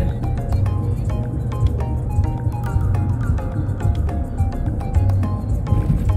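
Background music with a steady beat over a deep bass, with short melody notes.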